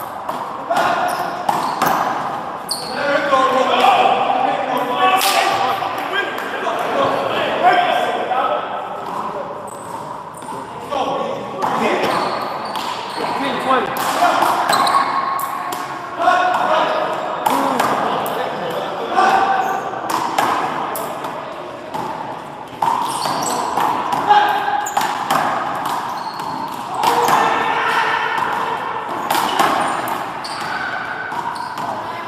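Small rubber handball being struck by hand and smacking off the wall and floor again and again during a doubles handball rally in an indoor court, a sharp slap every few seconds. Indistinct voices throughout.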